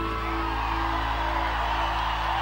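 Live pop band holding a sustained chord at the end of a sung line, over faint whoops from a large concert crowd.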